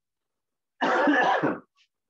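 A man clearing his throat once, about a second in, after a stretch of silence.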